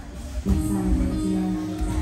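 Music that starts about half a second in with steady, held notes, over low mat and room noise.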